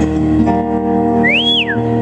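Live band holding a steady chord on acoustic guitar and trumpet, with one sharp whistle about a second and a quarter in that rises, holds briefly and falls away.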